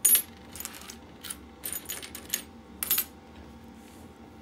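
Small metal rings and washers clinking against each other as a hand sorts through a pile of them: a string of light, irregular clinks, the loudest right at the start, stopping about three seconds in.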